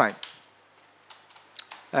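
Computer keyboard typing: a few short, faint keystrokes in the second half.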